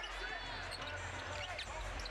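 A basketball being dribbled on a hardwood arena court during live play, over steady background noise in the arena.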